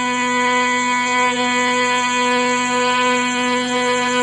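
Carnatic concert music in raga Pantuvarali: a single long note held steadily on one pitch over a drone.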